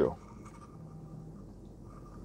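A man's voice finishes a word, then a pause in his talk with only faint, steady room noise and a low hum.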